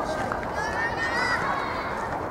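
A child's high-pitched shout or call, about a second long, rising and then falling, over steady background noise on a youth soccer pitch.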